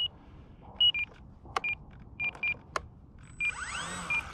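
Short, high electronic beeps from the RC plane's radio gear, repeated singly and in pairs, with two sharp clicks between them. In the last second the plane's brushless electric motor spins up with a faint rising whine, turning its replacement propeller.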